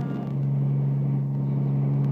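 A motor vehicle engine running steadily at idle, a constant low hum.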